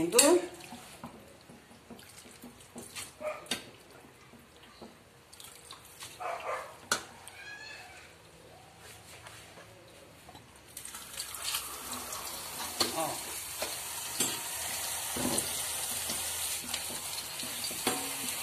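A kitchen tap opened about eleven seconds in, running steadily onto grated green papaya in a metal colander: the cold-water rinse that shocks the blanched papaya. Before that, a few light clicks and knocks.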